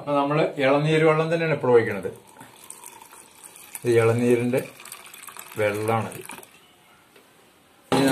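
A man speaking in three short bursts, with a faint trickle and splash between them as clear liquid is poured from a steel pot into a steel mixer-grinder jar.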